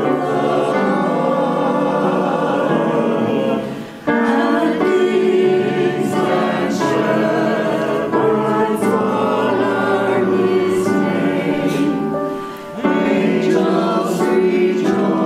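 Church choir of mixed men's and women's voices singing an anthem in parts, in sustained phrases with two short breaks, about four seconds in and again near the end.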